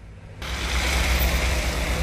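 Road traffic on a snow-covered street: car engines running and tyre noise on the snowy road, a steady noise with a low rumble that sets in about half a second in.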